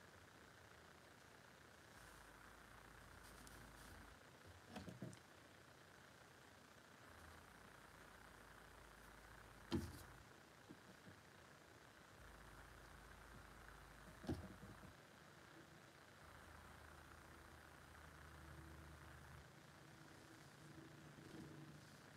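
Near silence, room tone, broken by a few light taps and clicks of small model parts being handled on a worktable: a little cluster about five seconds in, the sharpest tap near ten seconds and another about four seconds later.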